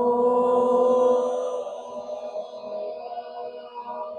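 Voices chanting one long 'Om' together in unison, held at a steady pitch, growing quieter after about a second and a half.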